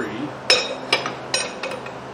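Steel wrenches clinking on the axle nut and hardware of a mower's front caster wheel: a handful of sharp metallic clinks with a brief ring, the loudest about half a second in.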